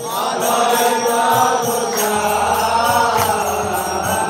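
Voices chanting a Vaishnava devotional mantra in a steady melody, with a regular beat of small hand cymbals (kartals).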